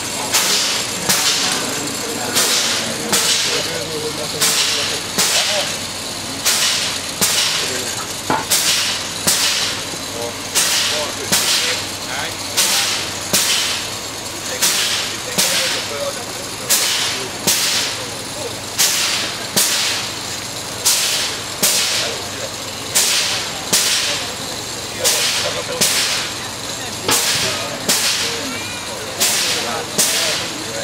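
MÁV 109.109 steam locomotive standing with steam up, puffing out sharp hissing bursts of steam in a steady rhythm of about one a second.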